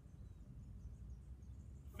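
Quiet outdoor background: a low, steady rumble with a faint hiss and no distinct event.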